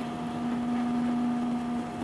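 Triumph Tiger's inline three-cylinder engine running at a steady cruise: an even hum with a faint hiss of wind and road beneath it.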